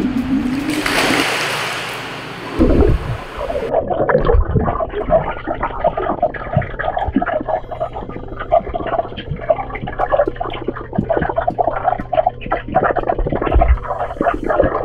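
A rush of splashing water, then muffled underwater sound from a camera submerged in a swimming pool: constant bubbling and crackling over a steady low hum.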